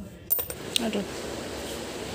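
Metal jewelry clinking as pieces are handled in a jewelry box: a few light, sharp clinks in the first second, followed by a steady hiss.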